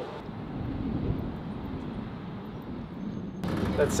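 A low, steady indoor rumble. About three and a half seconds in it cuts to the louder running noise inside a city bus, with a man starting to speak.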